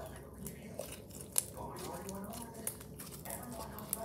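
Slime squeezed and kneaded between the hands, making quiet sticky clicks and pops, with one sharper pop about a second and a half in.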